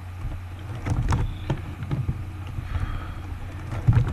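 Steady low background rumble and hum with a few faint clicks about a second in.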